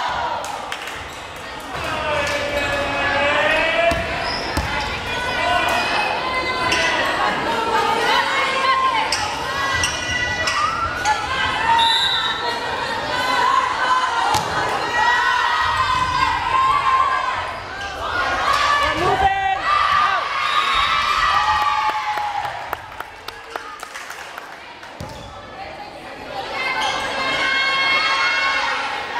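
Volleyball being struck and bouncing on a gym floor during a rally, with overlapping voices of players and spectators calling out throughout; it goes quieter for a moment near the end before the voices rise again.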